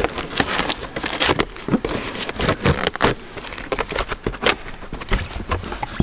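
A cardboard shipping box being torn open by hand: a run of crackling rips and tears of cardboard, with rustling as the flaps are pulled back.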